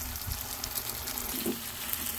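Lemon-lime soda poured from a plastic bottle into a hot frying pan of sautéing shrimp paste and pork, the liquid running in with a steady sizzle.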